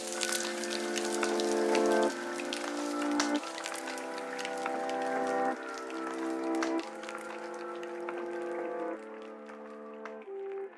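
Chillhop background music: sustained chords that change every second or two over a light crackle, with no beat, growing quieter toward the end.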